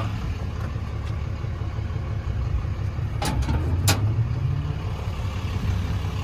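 The 6.7-litre Cummins inline-six turbodiesel of a 2011 Ram 3500 idling with a steady low rumble. Two sharp clicks come through about three and four seconds in.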